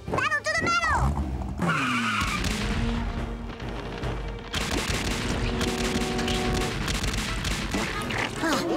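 Cartoon sound effects: a short squeaky vocal at the start, then a toy tank's engine starting up and a dense rattle of rapid fire from about halfway in, all over background music.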